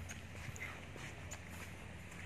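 Footsteps on rock and dry leaf litter: a few irregular short clicks and scuffs, over a steady low hum.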